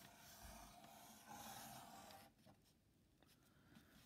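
Black marker drawing on newspaper: the felt tip faintly scratching across the thin paper for about two seconds, then stopping.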